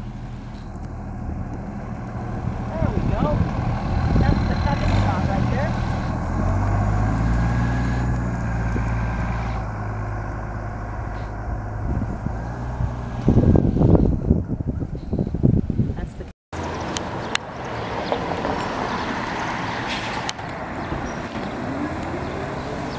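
A New Flyer low-floor diesel city bus engine pulls away and accelerates past, its low steady drone rising, then fades as the bus drives off, with a loud burst of low rumble near the middle. After a sudden break, street traffic with a second New Flyer bus running as it turns at an intersection.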